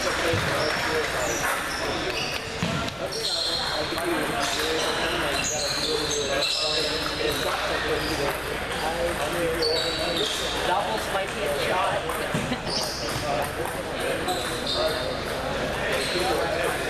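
Table tennis hall during play: celluloid-type balls clicking on tables and paddles from several matches at once, over a general murmur of voices and short high squeaks across the hall.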